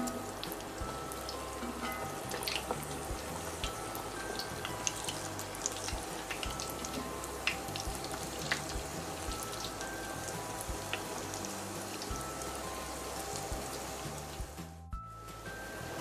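Falafel balls deep-frying in hot oil, a steady fizzing bubble with many scattered small pops and crackles, under soft background music. The sound cuts out briefly near the end.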